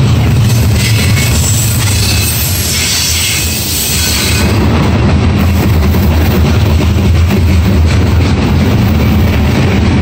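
Freight cars rolling past at close range: a steady, loud rumble and clatter of steel wheels on rail, with a higher wheel hiss over the first four seconds or so.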